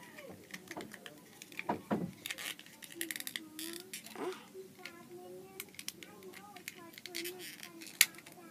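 Scattered small clicks and rattles of a plastic toy car being worked free from its packaging ties by hand.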